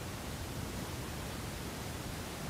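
Steady, even background hiss with nothing else in it, the noise floor heard in a pause between speech.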